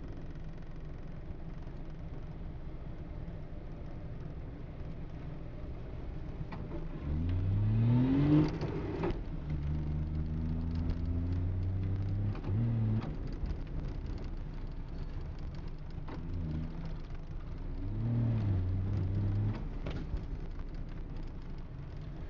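DKW 3=6's three-cylinder two-stroke engine, heard from inside the cabin while driving. It runs low and steady, revs up about seven seconds in, holds a steady note for a few seconds, and revs briefly again near the end.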